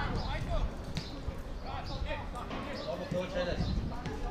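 Players calling out to each other across a football pitch, heard from a distance, with a few dull thuds of the ball being kicked.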